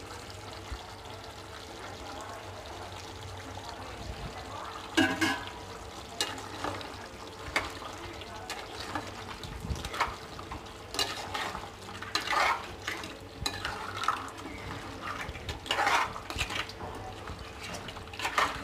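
Steel ladle stirring a thick crab curry in a metal kadai, scraping and knocking against the pan in irregular strokes from about five seconds in, over a faint steady hum.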